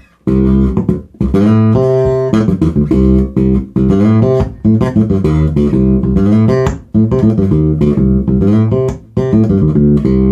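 Dingwall NG2 fanned-fret electric bass playing a funk line in short phrases with brief rests, on the back (bridge) pickup position, amplified through a Gallien-Krueger MB Fusion 800 head and an ML-112 cabinet.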